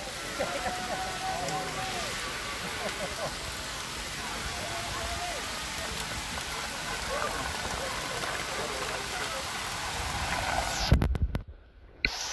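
Hail falling hard, a dense steady hiss of hailstones hitting the road and cars, with faint voices under it. About eleven seconds in there is a loud knock, and then the sound drops out almost completely.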